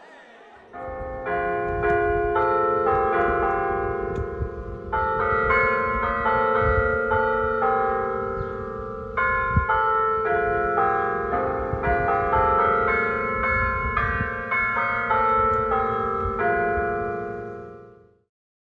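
Church bells ringing, several bells struck one after another so their tones overlap and ring on, fading out at the end.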